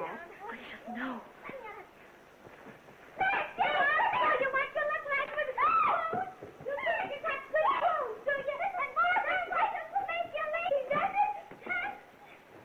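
Women's high-pitched cries and shrieks with no clear words, starting about three seconds in and going on in quick bursts as they scuffle. The sound comes from a worn early-1930s film soundtrack.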